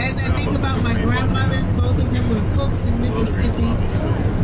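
People's voices over the steady low rumble of a minibus's engine and tyres, heard inside the moving bus.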